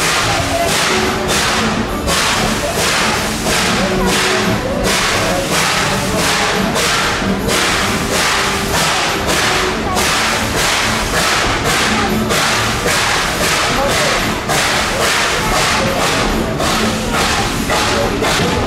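Narrow-gauge steam locomotive hauling a passenger train, its exhaust chuffing in an even beat of about two a second, with a faint tone running under the beat.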